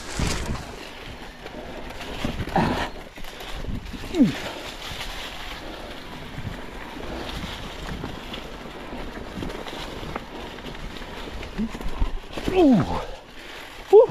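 Mountain bike tyres rolling fast over dry fallen leaves and dirt: a steady rushing crackle with scattered knocks from the bike. Brief grunts or laugh-like sounds from the rider come about three and four seconds in and again near the end.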